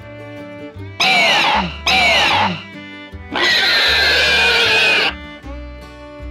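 Background music with fiddle, broken by three loud, shrieking dinosaur roars with falling pitch: two short ones about a second in, then a longer one lasting nearly two seconds.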